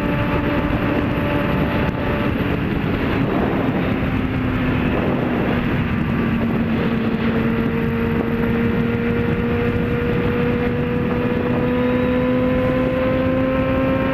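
Motorcycle engine running at a steady highway cruise, under heavy wind rush on the microphone. The engine note sags slightly, then from about halfway through climbs slowly as the bike gathers speed.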